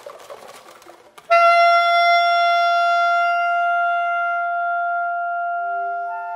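Contemporary duo for flute and bass clarinet. Soft breathy sounds and light clicks give way, just over a second in, to a sudden loud held note that slowly fades away.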